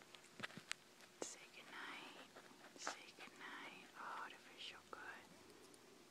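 Faint whispering that comes and goes in soft breathy phrases, with a few sharp little clicks in the first second.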